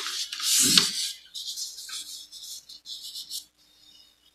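Rustling and rubbing close to a microphone: a louder scuffing burst in the first second, then softer, scratchy rustles on and off, stopping about three and a half seconds in.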